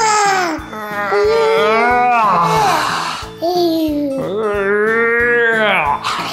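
A toddler's voice in a series of long, high calls that rise and fall in pitch while she is lifted, over background music with a steady beat.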